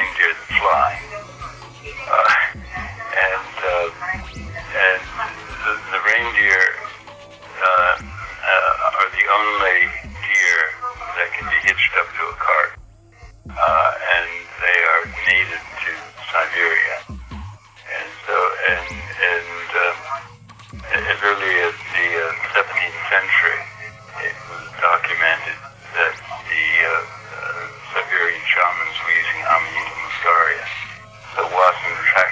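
A person talking continuously through a narrow, phone-like line, with a steady low hum and music underneath.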